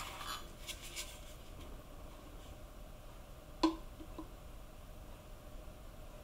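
Faint handling clicks, then one sharp knock a little past halfway and a smaller click just after: a glass measuring jug and a plastic squeeze bottle being handled while melted colored cocoa butter is poured from one into the other.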